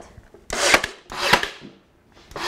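Brad nailer firing twice, about a second apart, driving brad nails through the top of a wooden divider into a cabinet face frame. Each shot is a sharp snap that trails off quickly.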